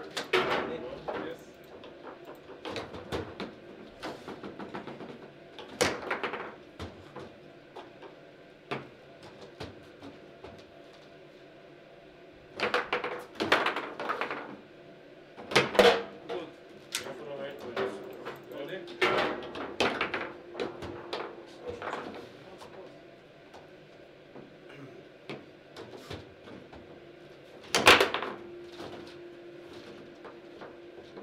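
Table football in play: the hard ball struck by the rod-mounted players and knocking off the table, in scattered sharp knocks and quick clusters of knocks, with the loudest crack near the end.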